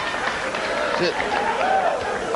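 A man's voice saying a word or two over a steady rush of theatre-audience noise.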